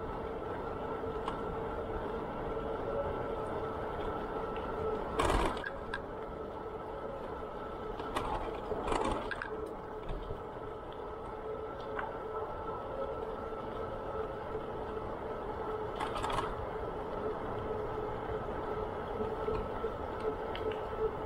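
A bicycle in motion on a paved trail: a steady mechanical whir with a constant hum from the drivetrain and tyres, broken by a few brief louder rattles or bumps, the loudest about five seconds in.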